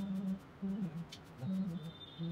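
A man's voice humming a tune in held notes, with short breaks between phrases.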